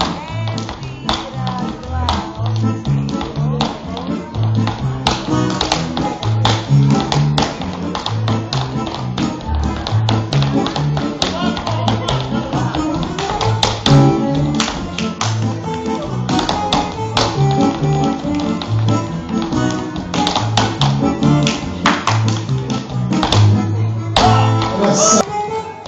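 Lively Roma dance music with a steady, repeating bass line, with many sharp taps and slaps over it: a male dancer's shoes striking a wooden floor and his hands slapping his legs and shoes in a Roma men's dance.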